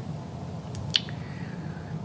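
A wooden colored pencil set down on a wooden tabletop: a few light clicks, the sharpest about a second in, over quiet room tone.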